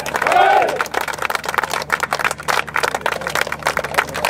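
A loud group shout of cheering in the first second, then steady hand clapping by many people.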